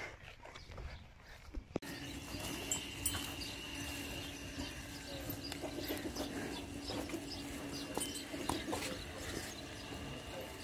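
Farm animal sounds with scattered clicks and knocks. A faint steady hum comes in after a sudden change about two seconds in.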